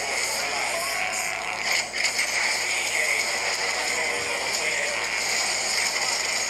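Action-movie trailer soundtrack playing: a dense, steady mix of sound effects and music with snatches of voices.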